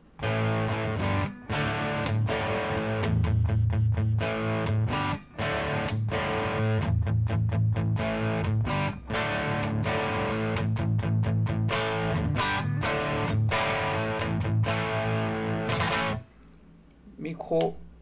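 Fret King Super Hybrid electric guitar played through an overdriven amp sound on its full bridge humbucker: sustained distorted chords and riffs broken by a few short stops, the playing ending about two seconds before the end.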